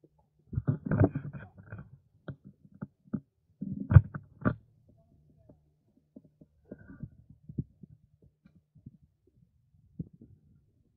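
Irregular low thumps and rumbling crackles close to the microphone, in two loud clusters near the start and around four seconds in, then scattered softer knocks.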